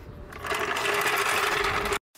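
TV-static sound effect used as an edit transition: a buzzing hiss with a steady hum under it, swelling in early and cutting off suddenly.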